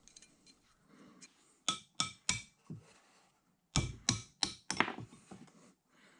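Sharp metallic clicks and clinks of a screwdriver tip and small metal parts against a bronze arbor bushing, in two quick groups about two and four seconds in.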